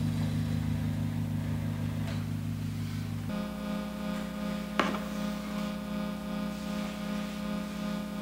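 A held, droning chord on a sustained keyboard, shifting to a new chord about three seconds in, with a single click near five seconds and a faint hiss underneath.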